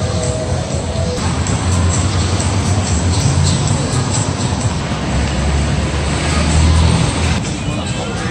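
Busy city street noise: a steady roar of traffic, with a low engine rumble that swells from about three to seven seconds in, under music and voices.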